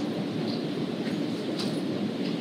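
Steady low rumble of room background noise, even throughout, with no distinct events.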